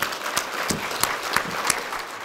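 Audience applauding: a dense patter of clapping hands, with a few sharper single claps standing out.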